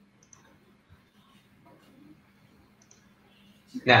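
A near-silent pause with a few faint, brief clicks, then a man starts speaking near the end.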